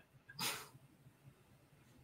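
A single short breathy exhale, like the tail of a laugh, about half a second in, then faint room tone.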